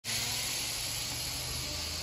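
Steady, high-pitched shrilling of a summer insect chorus, with a faint low hum underneath that fades near the end.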